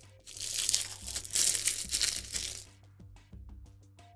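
Plastic packaging crinkling loudly for about two and a half seconds as it is handled, then a few light clicks, over quiet background music.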